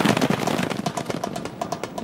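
Gunfire: a rapid, irregular run of sharp cracks, densest in the first half second and thinning out toward the end.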